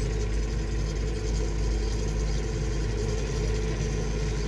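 Heavy diesel engine of an XCMG rotary piling rig running steadily, a constant low rumble.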